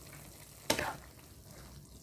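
Vegetables and meat in a little soy, fish and oyster sauce simmering in a nonstick wok, a low steady sizzle. One short, louder noise comes less than a second in.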